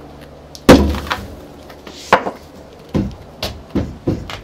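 A rotted wooden post's base being knocked and shoved, giving several sharp wooden knocks, the loudest about three-quarters of a second in. The post's bottom is eaten away by carpenter ants and it no longer carries any weight, so it moves freely.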